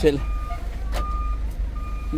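Pickup truck's engine running with its reversing beeper sounding: three short high beeps about two-thirds of a second apart over a steady low rumble, as the truck backs up.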